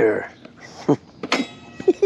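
A man laughing in short bursts, with a brief click near the middle.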